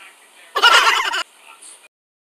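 A short warbling sound effect, under a second long, from a pink children's toy laptop as its keys are pressed, sounding like a recorded bird call.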